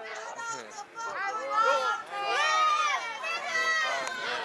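Indistinct high-pitched voices talking and calling out, with no music.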